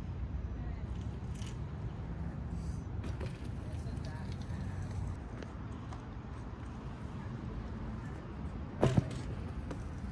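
BMX bike riding across a concrete skatepark plaza over a steady low outdoor rumble, with a sharp double clack about nine seconds in as the bike hits the bank and launches out over the grass.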